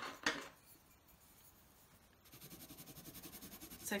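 A light tap, then about a second and a half of a coloured pencil shading quick, even back-and-forth strokes on paper.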